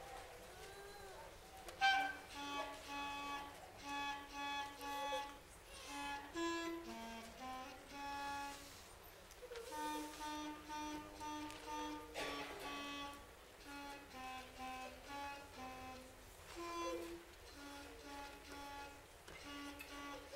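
Solo clarinet played by a beginning student: a melody of short, separate notes in the instrument's low range, starting about two seconds in, with brief pauses between phrases.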